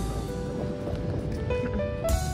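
Background music with held, steady notes.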